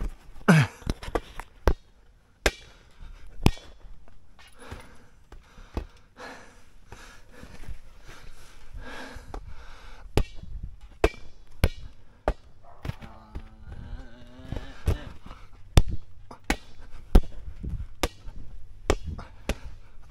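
Irregular sharp slaps of hands hitting a large inflatable ball as it is batted back and forth, with softer thuds on the trampoline mat between them.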